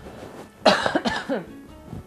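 A person coughing: a short fit of about three coughs starting just over half a second in.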